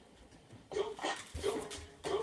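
A dog barking repeatedly in short barks that come roughly in pairs, starting a little under a second in.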